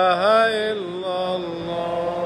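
Unaccompanied male voice chanting a long, ornamented religious invocation in Arabic, drawing out 'Allah' in sustained wavering notes: loudest in the first half-second or so, then sinking to a softer held note.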